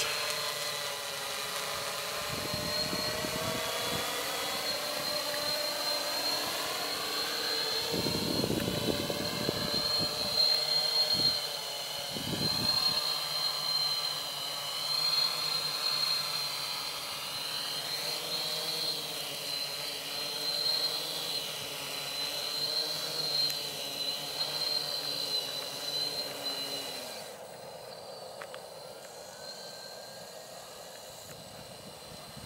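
Quadcopter drone's electric motors and propellers whining steadily in flight, the pitch drifting up and down as the throttle changes. The whine stops a few seconds before the end, with the drone landed. A few low rumbles in the first half.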